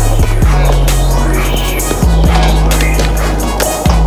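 Music with a heavy bass line, over the sound of a skateboard rolling and grinding its trucks along a skatepark ledge.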